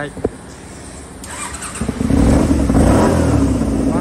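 Kawasaki Eliminator 250V's carbureted V-twin engine running through an aftermarket slash-cut muffler, getting much louder about two seconds in and then holding a steady, loud exhaust note.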